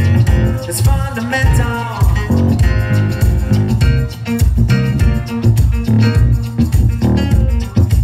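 Live band playing loud amplified music: electric guitar and keyboard over a steady, pulsing bass beat.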